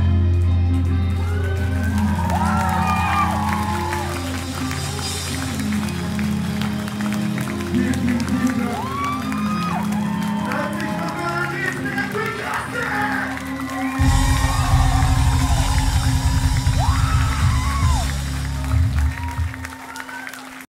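Club crowd cheering, whooping and clapping as a hardcore band's song rings out on sustained amplifier notes. A louder low rumble comes in about two-thirds of the way through.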